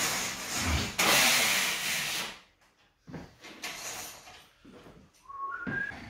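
A zebra roller blind being pulled up at a window: a rasping rush lasting about two seconds, then a short rising squeak near the end.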